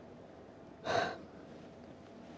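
A man's single short, sharp intake of breath about a second in, picked up close on a lapel microphone, against quiet room tone.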